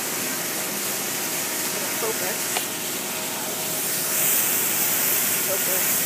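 Water jets in a tunnel car wash spraying onto a car body, a steady hiss that grows louder about four seconds in.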